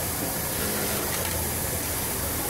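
Steady low hum and hiss of a garment-factory sewing floor with machinery running, even in level throughout.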